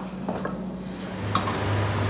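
Quiet room tone with a steady low hum. A little past a second in, it gives way to a deeper steady hum, with a single brief click.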